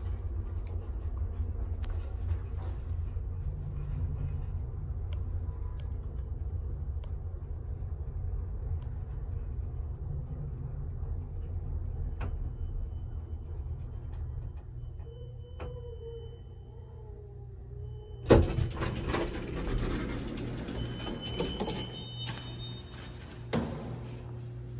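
Small vintage passenger elevator in motion: a steady low rumble from the travelling cab, with a faint high tone joining near the middle. About eighteen seconds in, a loud thump as the car arrives, then several seconds of rattling and sliding as the doors open.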